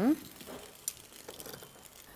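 Wooden spoon rolling dumplings through buttered breadcrumbs in a frying pan: faint scraping with a few light clicks.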